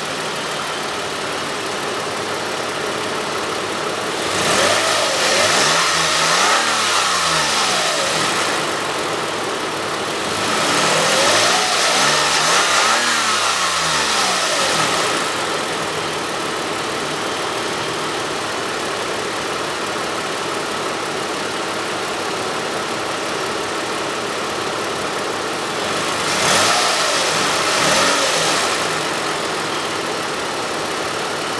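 A 2012 Toyota Alphard's 3.5-litre V6 (2GR-FE) runs at idle and is revved three times, each time rising in pitch and falling back to idle. The first two revs come about four seconds and ten seconds in, and a shorter one comes near the end.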